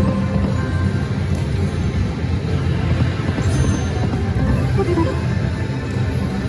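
Video slot machine playing its game music as the reels spin, over a steady low casino-floor rumble.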